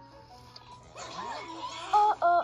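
Soft background music; about halfway through, a wavering cry whose pitch slides up and down rises over it and grows louder.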